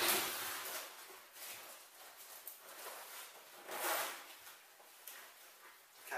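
A camouflage rucksack being handled and turned: its fabric rustles and scrapes as a side pouch is got at. The handling is loudest right at the start and again about four seconds in.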